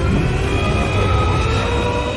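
Animated fight-scene sound effects for a hammer strike and a surge of golden energy: a heavy, steady low rumble with sustained, slowly gliding tones over it, mixed with dramatic score.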